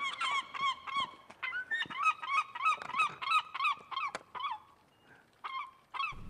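Geese honking in a rapid series of short calls, about three a second, with a brief pause near the end.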